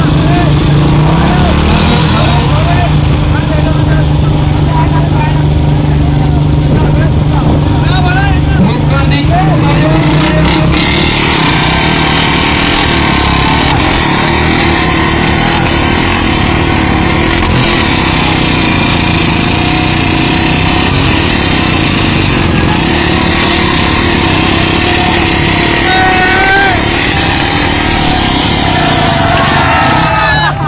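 Motorcycle engines running loudly and steadily under a crowd's shouting and chatter. About ten seconds in, the steady low engine note gives way to a denser, hissier wash of noise.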